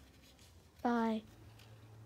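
A single short vocal sound from a person, about a third of a second long and a little falling in pitch, about a second in.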